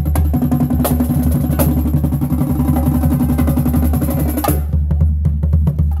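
Marching drumline playing a fast cadence: snare drum, tenor drums, bass drum and cymbals in rapid strikes, over a steady low tone. The sharp high strikes thin out near the end.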